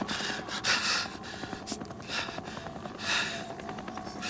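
A man's laboured, gasping breaths as he struggles for air after a gunshot wound: a few harsh gasps, the loudest about a second in and another near the end.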